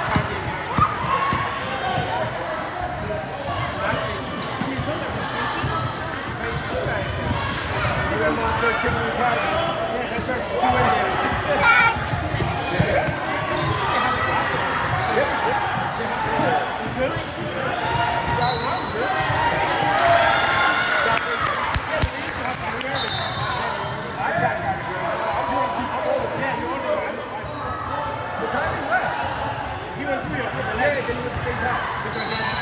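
A basketball bouncing on a hardwood gym floor during a game, with a steady mix of players' and spectators' voices in the large, echoing hall.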